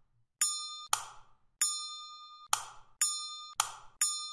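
A quick series of short electronic sound effects, about six in four seconds: sharp clicks and ringing dings. Each starts suddenly and fades. They mark key presses stepping the simulation along.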